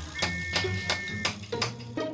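Hammer tapping nails into a wooden frame, about three strikes a second, under light background music.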